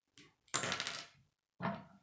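Small hard plastic K'nex construction pieces clattering against each other and the wooden tabletop as they are handled: a small click, then a longer rattle about half a second in and a shorter one near the end.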